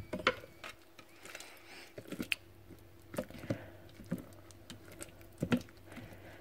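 White plastic spatula stirring cooked bacon and mushrooms in a stainless steel Bellini bowl: soft, scattered knocks and scrapes of the spatula against the bowl and blade, with squishy sounds of the food being moved.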